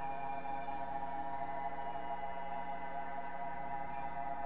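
Steady electronic drone music: many held tones sounding together without beat or change. A faint higher tone fades out about a second in.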